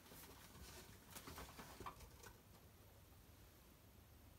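Near silence, with a few faint rustles and light taps in the first two seconds or so from a boxed figure being drawn out of a cardboard shipping box.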